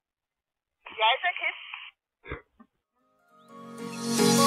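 A short, unclear burst of voice about a second in, then background music fading in near the end.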